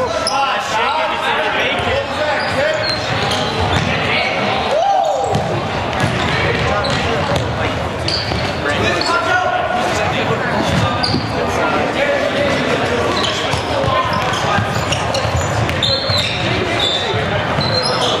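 Team handball game play on a hardwood gym floor: a ball bouncing, sneakers squeaking in short high chirps, and indistinct shouting from the players, all echoing in a large hall.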